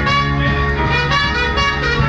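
Jazz band playing, with a trumpet carrying a moving lead line over a steady bass.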